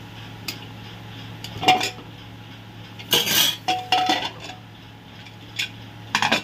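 Aluminium pressure cooker being opened: scattered metal clinks and scrapes of the lid and a slotted spoon, the loudest a half-second scrape about three seconds in followed by a short ringing clink. A steady low hum runs underneath.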